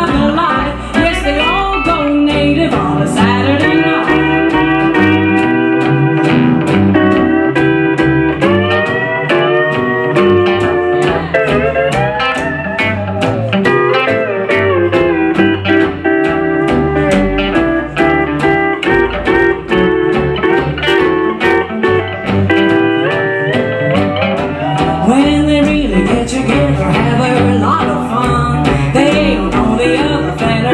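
Live hillbilly band playing an instrumental break led by a steel guitar, its notes sliding up and down over strummed acoustic guitar and upright bass keeping a steady beat.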